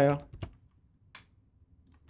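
Three soft, isolated computer keyboard clicks, about a second apart, as a function is chosen in a software dialog. A spoken word ends just as they begin.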